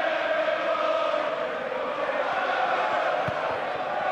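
Football stadium crowd chanting in unison, thousands of voices holding long notes together over the general noise of the crowd.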